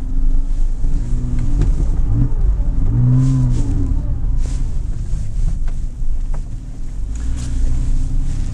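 Porsche Cayman S (987) flat-six engine heard from inside the cabin, running at low revs as the car slides on snow. It revs up and back down once, about three seconds in.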